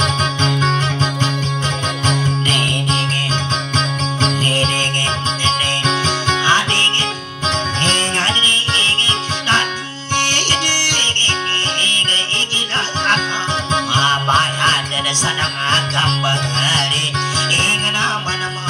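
Amplified acoustic guitar playing Dayunday accompaniment in a fast, continuous plucked rhythm. It drops briefly twice, about seven and ten seconds in.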